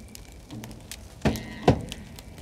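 Two sharp knocks in quick succession a little past halfway through, the second one louder, over a faint low background.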